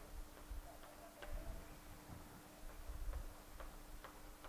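Chalk striking and scraping on a chalkboard as short dashes of a vertical line are drawn: faint, irregular ticks about every half second.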